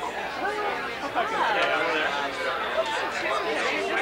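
Crowd chatter: many people talking at once, with overlapping voices and no single speaker standing out.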